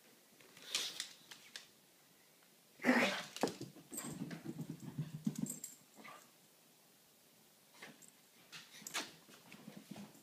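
A pug making dog sounds: a loud, sudden noise about three seconds in, followed by about two seconds of low, rapid pulsing, with a few faint clicks later on.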